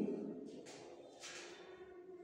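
Two short, scratchy strokes of a felt-tip marker on a whiteboard, about two-thirds of a second apart, as lines are ruled on the board.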